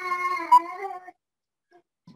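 A single high-pitched, drawn-out call lasting about a second, with a brief wobble in the middle.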